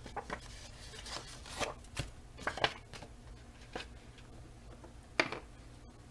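Cardstock and patterned paper handled on a cutting mat: a string of short, separate paper rustles and light taps, with a sharper one a little past five seconds in.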